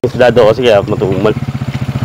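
A small engine running steadily with an even putter, about ten beats a second, under a man's voice for the first second or so.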